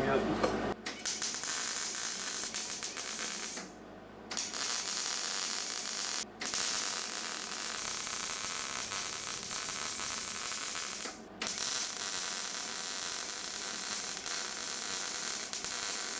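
MIG (wire-feed) welder running a bead on a metal intercooler pipe: the steady crackling hiss of the arc. It starts about a second in and stops briefly three times, for about half a second near four seconds in and for an instant near six and near eleven seconds.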